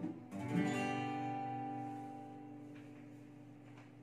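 Acoustic guitar strums a final chord about half a second in and lets it ring, the chord slowly dying away to end the song.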